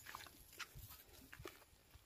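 Near silence, with a few faint, scattered rustles and clicks.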